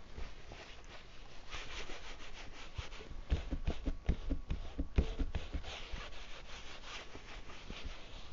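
Damp paper towel rubbed back and forth over a stretched canvas in quick repeated strokes, blending a thin wash of yellow-tinted white acrylic paint into the background. The scrubbing is busiest through the middle, with a few soft thuds among the strokes.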